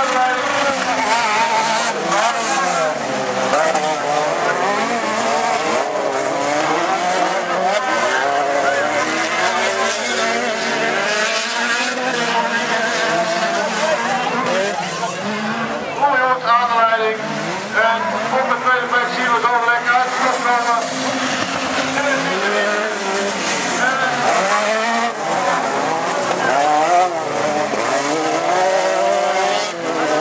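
Several autocross race cars' engines revving hard on a dirt track, overlapping, their pitch rising and falling as they accelerate and lift off through the corners.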